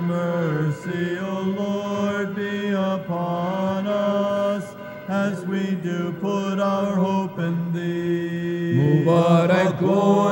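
Male chanters singing Orthodox Byzantine-style chant: a steady held drone note (ison) under an ornamented melody line that bends and turns.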